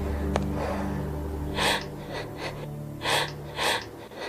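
Low sustained film-score drone that stops about a second and a half in, followed by a person's sharp gasping breaths: three strong gasps with fainter ones between.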